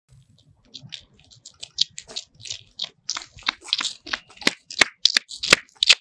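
A run of short, irregular crunching and rustling noises that grow denser and louder, with a few sharp clicks in the last second or so.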